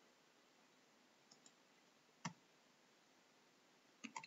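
Near silence with one sharp click at the computer about two seconds in, preceded by two faint ticks.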